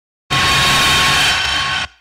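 A loud, steady burst of rushing noise, like a hiss, lasting about a second and a half. It starts suddenly and falls away just before the next voice. It is a transition sound effect in a news broadcast.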